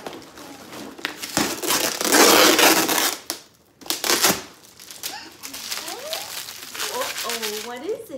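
Packing tape being ripped off the top of a cardboard box: a loud tearing rasp lasting about a second and a half, starting about two seconds in, with crinkling of tape and cardboard around it. Voices come in during the second half.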